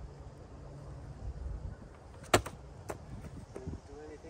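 A plastic SEBO vacuum powerhead thrown down to smash it: one sharp, loud crack a little over two seconds in, then a smaller knock and a few light clatters, over low wind rumble on the microphone.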